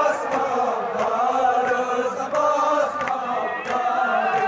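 Male voices chanting a Kashmiri noha, a Shia mourning lament, in a continuous melodic line that bends and holds.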